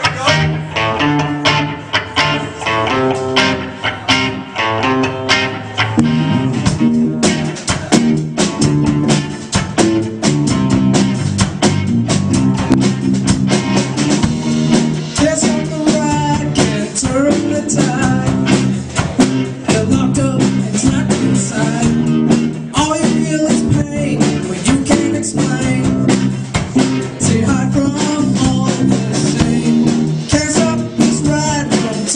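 Live band playing a song on guitars and drum kit.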